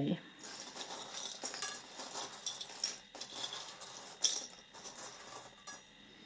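Small metal charms clinking and jingling against each other as they are shaken and rummaged through to draw one out, a busy run of light, sharp clicks.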